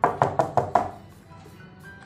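Knuckles knocking on a wooden door, about five quick knocks in the first second, over faint background music.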